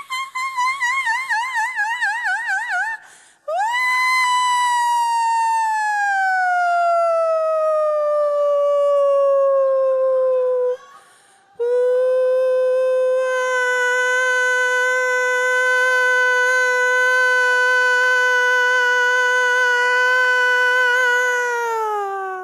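A woman's wordless, high, howl-like vocalizing. It starts as a wavering note with a wide vibrato; after a breath comes a long note sliding down about an octave, and after another breath a long steady held note that falls away at the very end.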